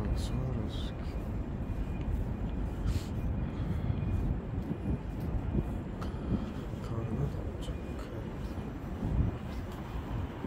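City street ambience: a steady low traffic rumble with the voices of passersby.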